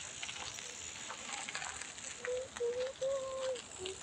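Steady, crackly outdoor hiss with a few faint ticks. In the second half come several short, level hummed tones from a voice.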